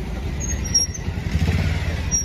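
Street traffic going by, with a vehicle passing close and loudest about one and a half seconds in.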